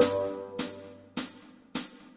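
A held bassoon note and its accompaniment die away as the tune reaches a rest. Only the backing track's hi-hat carries on, four evenly spaced ticks about 0.6 s apart.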